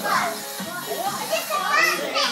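Several children's high voices calling out and singing together over background music.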